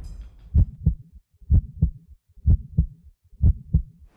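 Suspense heartbeat sound effect: four double low thumps, evenly spaced about a second apart.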